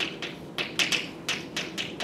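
Chalk writing on a blackboard: about a dozen sharp, irregularly spaced taps and short scratches as letters are written.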